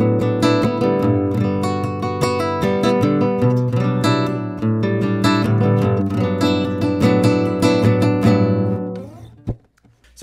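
Cordoba 55FCE nylon-string flamenco guitar played as a continuous run of plucked notes and chords. The playing fades away about nine seconds in, and a brief click follows.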